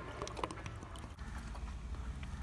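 A man gulping water from a plastic bottle: a quick run of small clicks and swallows in the first second, over a low steady hum.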